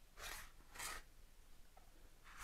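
Two faint, short scrapes, about half a second apart, from a small hand scraper spreading smoothing paste over a concrete worktop.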